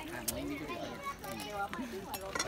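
Background chatter of several people's voices, with one sharp click near the start.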